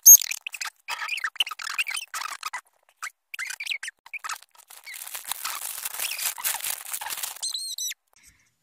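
Wrapping paper and a cardboard gift box with a plastic window being handled, crinkling and rustling in quick bursts. A sharp high squeak comes right at the start, the loudest moment, and a quick string of short high squeaks comes near the end.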